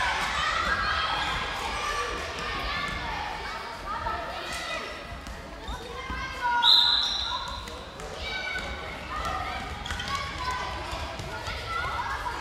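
Children's voices calling and shouting during a dodgeball game in a sports hall, with a ball bouncing and smacking on the floor. A short, high whistle blast, the loudest sound, comes about halfway through.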